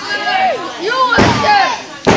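Spectators shouting at the ring, with one heavy slam about a second in, typical of a wrestler's body hitting the ring canvas.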